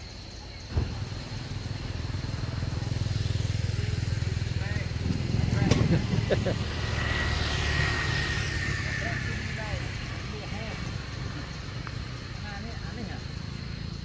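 A motor engine running close by, a low steady hum that cuts in abruptly about a second in, is loudest around the middle and then eases off. Indistinct human voices sound over it.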